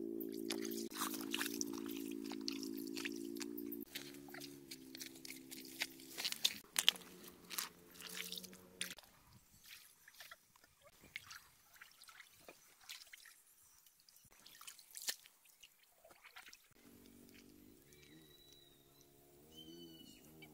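Water splashing and dripping as a dip net is swept and lifted through a shallow stream, with wading steps: many sharp splashes in the first half, thinning out to scattered drips later. A steady low hum that changes note a few times runs under the first half.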